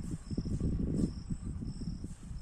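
Field insects chirping in short, repeated high-pitched trills over a thin steady high note, beneath a louder low rumble of wind on the microphone that is strongest in the first second.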